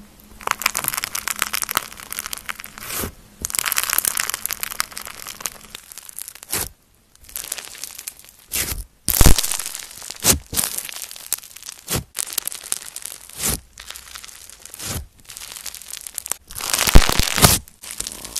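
Hands squeezing and pressing green floam (foam-bead slime), giving dense crackling and crunching from the tiny beads. It comes in spells with short pauses between, and a few louder pops stand out among them.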